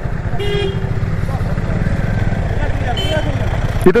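Low rumble of a motorcycle being ridden, its engine and wind on the microphone, with a short vehicle horn toot about half a second in. A man's voice starts right at the end.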